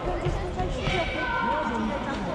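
Futsal ball being kicked and bouncing on a wooden sports-hall floor, with indistinct shouting voices of players and spectators echoing around the hall.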